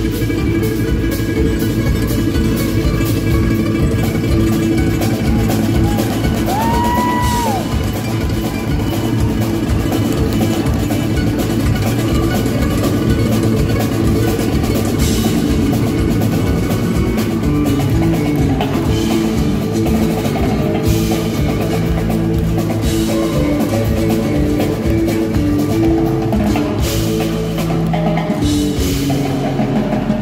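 Live rumba-flamenco music: a nylon-string guitar played over a drum kit and percussion. A short tone rises and falls about seven seconds in.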